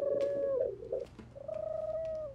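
Two held, pitched calls from a small creature in a sealed container. The second call dips slightly in pitch at its end.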